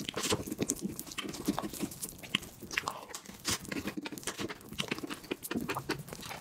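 Mouth sounds of someone eating whipped-cream sponge cake: chewing with many short, irregular wet clicks.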